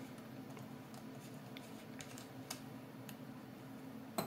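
A few faint, scattered small clicks of a screwdriver working the tiny retaining screw on a laptop's M.2 NVMe drive.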